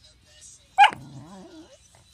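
A beagle gives one sharp bark about a second in, then a short, lower, wavering growl-like sound: a warning while guarding the TV remote.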